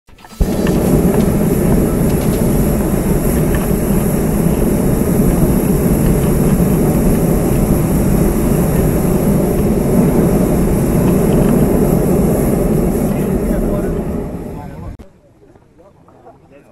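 Hot-air balloon's propane burner firing overhead, a loud steady blast of noise that stops abruptly about fifteen seconds in.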